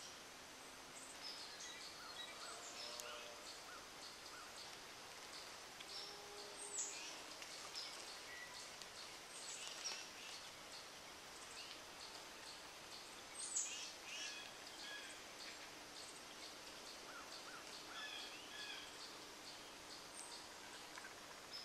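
Several wild birds chirping and calling faintly at intervals, with two louder calls sliding downward in pitch about seven and thirteen seconds in, the second the loudest.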